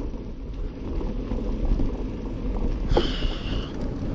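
Mountain bike rolling fast over a sandy dirt singletrack: a steady rumble of tyres and frame, with small rattles and clicks, and wind buffeting the bike-mounted camera's microphone. A brief high squeal comes about three seconds in.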